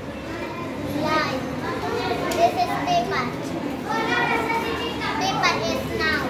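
Children's voices talking and calling out, several overlapping at once.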